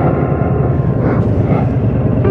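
Harley-Davidson V-twin motorcycle running at a steady cruise, its low engine rumble mixed with wind rush on the camera microphone.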